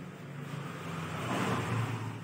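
Chalk writing on a chalkboard, over a steady low hum that swells and fades about halfway through.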